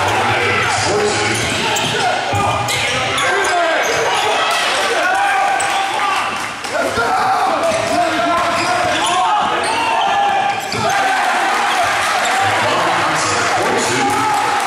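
A basketball being dribbled on a hardwood court, with players' and spectators' voices, all echoing in a large gym.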